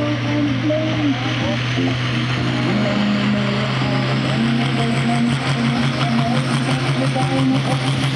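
Diesel engine of a pulling tractor running hard under full load as it drags a weight-transfer sled, a steady low drone with a faint high whine creeping up in pitch near the end. A commentator's voice talks over it at times.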